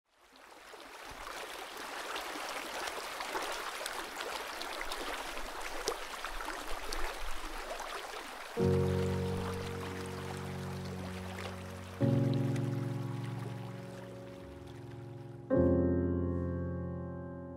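Running water of a small creek cascade fades in. About eight and a half seconds in, slow piano chords begin, three in all, each struck and left to ring out over the water.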